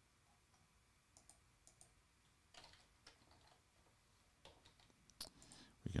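Faint, scattered computer keyboard keystrokes and mouse clicks, a few at a time with pauses between, getting a little louder near the end.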